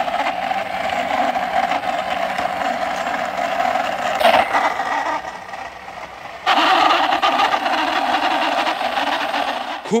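Plastic toy school bus pushed by hand along a rough, mossy concrete wall: a steady rolling rumble from its plastic wheels. A sharp knock comes about four seconds in, and after a short lull the rolling picks up again abruptly near seven seconds.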